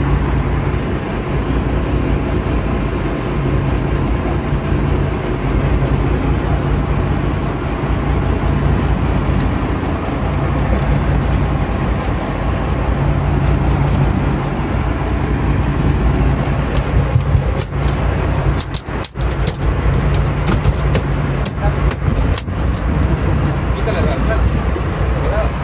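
Sportfishing boat's engine running with a steady low drone. Several sharp knocks and bumps come in the last few seconds.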